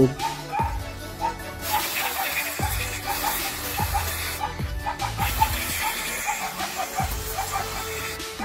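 Aerosol carb cleaner hissing as it is sprayed into a motorcycle brake caliper to flush out old grease and dirt, in two long bursts with a short break between, the first starting about two seconds in. Background music with a beat runs underneath.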